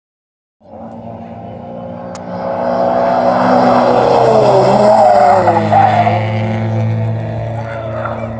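A sports car's engine running hard on a race circuit, growing louder as it approaches and dropping in pitch as it passes about five seconds in, then carrying on steadily. A single sharp click about two seconds in.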